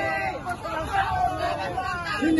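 Crowd babble: many voices of a large crowd talking and calling out over each other at once.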